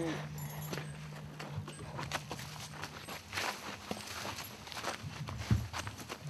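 Irregular steps tapping on the ground, with a voice faintly in the background and a low steady hum underneath.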